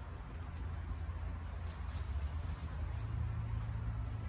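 Low steady outdoor rumble, with a few faint clicks and rustles of a nylon dog-harness strap being pulled through its plastic adjustable slider.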